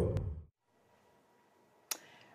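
A man's voice trailing off, then near silence broken by a single sharp click near the end.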